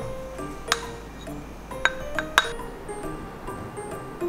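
Background music, over which a rice paddle clinks against a rice cooker's inner pot and a bowl as rice is scooped: one sharp clink under a second in, then three more close together around two seconds in.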